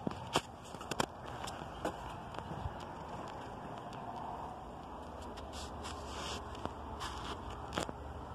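1991 Fedders 18,000 BTU air conditioner running steadily with a low hum, sounding rough. Scattered clicks and rustles from the camera being handled close by.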